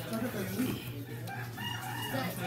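A rooster crowing: one long call that begins about a second and a half in.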